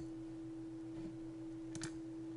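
A steady electrical hum at one pitch in the recording's background, with a computer mouse click at the start and a quick double click near the end.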